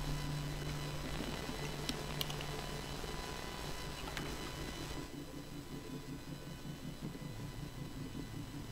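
Electromagnetic interference in a boosted analogue synth recording: a steady low hum with thin high whines and hiss in the top end. About five seconds in the upper hiss thins a little, the modest reduction that clip-on ferrite filters on the cables give.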